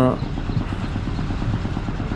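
Steady low rumbling background noise, uneven and fluttering in the low end, with no clear tone or rhythm.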